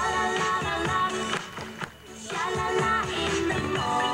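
Pop backing music with a steady beat. It drops away briefly about halfway through, then comes back in.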